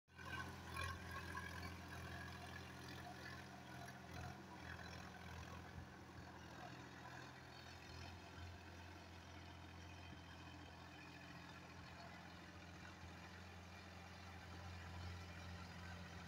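Sonalika farm tractor's diesel engine running steadily under load, pulling an implement through flooded paddy-field mud: a faint, even low hum.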